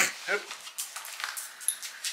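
A few faint light taps and rustles as a small shaggy dog gets down off a lap on a fabric sofa.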